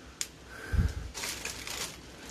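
Footsteps on broken floor tiles and plaster rubble: a click, a dull thump just under a second in, then a gritty crunch of debris underfoot.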